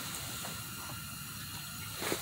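A steady hiss with a faint low rumble beneath it, unchanging and with no distinct strikes or events.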